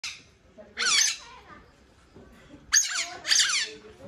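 Porcupines giving short, high-pitched squeaky calls: a brief one at the start, one about a second in, and two close together near the end.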